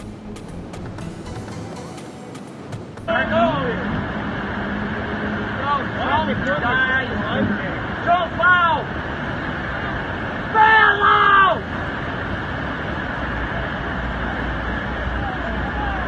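About three seconds in, a steady rush of water starts, pouring over a low-head dam spillway. Over it, people shout several times, loudest a little past the middle.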